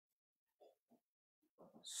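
Near silence with two faint, brief sounds about half a second apart, then a man's voice starts near the end.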